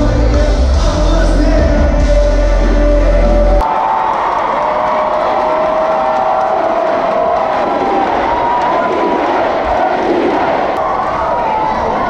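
Loud live concert music with heavy bass that cuts off suddenly about three and a half seconds in, followed by a large crowd cheering and shouting in a hall.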